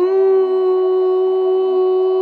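A woman's voice in light-language singing, holding one long steady note that slides up slightly as it begins, over a faint low drone.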